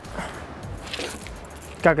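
Faint shuffling and rustling of a person getting up from a van's rear bench seat and stepping out through the side door.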